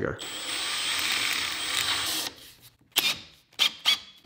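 Makita 18-volt cordless hammer drill run at light trigger for about two seconds, its keyless chuck held by hand and spinning closed to tighten a pre-drill and countersink bit; a faint high whine rides over the motor noise. The motor stops abruptly, and a few sharp clicks follow in the second half.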